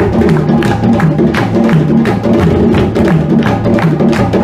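Live drum ensemble of tall hand drums and a shoulder-slung barrel drum playing a fast, steady dance rhythm: sharp slaps over a repeating pattern of low drum notes alternating between two pitches.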